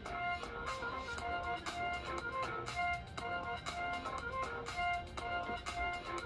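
Instrumental music with a steady beat playing from the Lenovo IdeaPad 5 laptop's built-in speakers at 50% volume, as a test of how loud they are.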